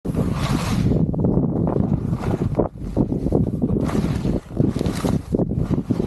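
Wind buffeting the action camera's microphone: a loud, unsteady rumble with four or five surges of hiss.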